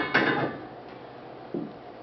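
Steel flex plate clanking against the pilot of a billet torque converter cover as it is handled: a sharp ringing metallic clank at the start with a quick second knock, then a fainter knock about a second and a half in.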